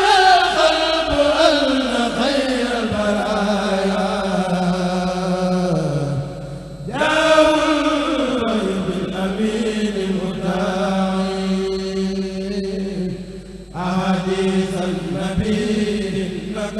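A group of men chanting an Arabic khassida (Sufi devotional poem) together through microphones, in long drawn-out phrases whose pitch slides downward. Brief pauses for breath come about six and thirteen seconds in, and each is followed by a new phrase.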